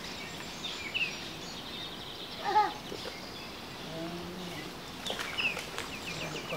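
Outdoor ambience with birds chirping at intervals, and one short, louder pitched call about two and a half seconds in.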